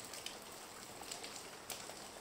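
Steady rain falling: a faint even hiss with scattered drop ticks.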